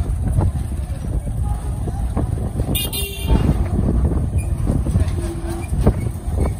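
Steady low rumble of motorcycle and street traffic. A short vehicle horn toot comes about three seconds in.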